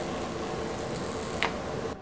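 Steady room hiss with a faint hum, and one short soft click or crinkle about a second and a half in.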